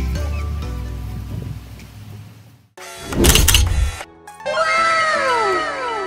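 Background music fades out. After a brief gap there is a loud, short sound effect about three seconds in, then a run of overlapping falling, whistle-like glides.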